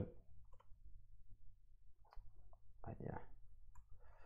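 Faint, scattered clicks of computer keyboard keys being typed, over a low steady hum, with a brief vocal sound from the typist about three seconds in.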